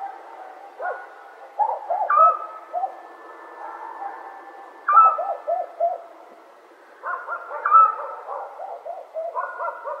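Owls hooting, several overlapping calls in bouts every two to three seconds, each bout a run of short hoots.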